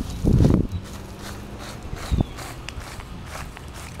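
Gloved hands pressing and brushing wood-chip mulch and soil around a newly set plant clump: a muffled rustling thump just after the start, a short knock about two seconds in, and light crackles of bark chips in between.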